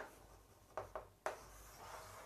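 Faint chalk writing on a chalkboard: a couple of short strokes about a second in, then a longer continuous stroke as a ring is drawn around the written words.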